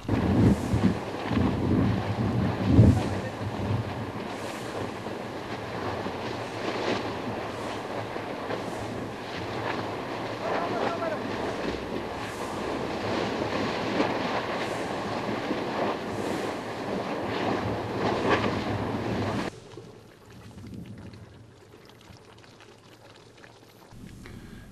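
Outdoor ambience at the rim of an active volcano's lava lake: wind on the microphone and people's voices over a steady rushing noise like surf. It cuts off suddenly about three-quarters of the way through, leaving a much quieter stretch.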